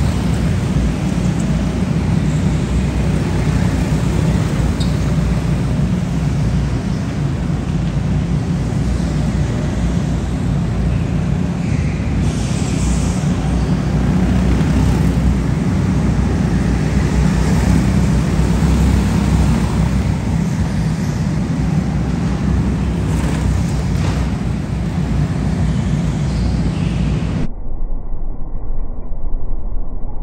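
Go-karts running laps on an indoor track, a steady, dense drone in a large hall. About two and a half seconds before the end the sound turns suddenly muffled, its high end cut off.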